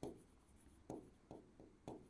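Faint pen strokes on an interactive display's writing surface as handwriting goes on: about five short, separate scratches or taps spread over two seconds.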